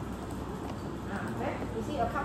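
Faint, indistinct voices murmuring in a classroom over a steady low room hum.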